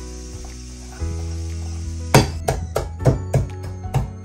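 A pestle pounding cooked beans and bamboo shoot in a small pot: from about halfway through, a run of sharp knocks, about three a second, over steady background music.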